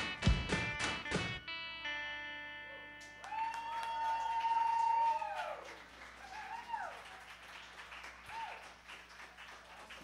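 A rock band with drums and electric guitars ends a song on a few loud final hits, leaving a chord ringing that fades out by about three seconds in. Then the audience cheers with whoops and applause, dying down toward the end.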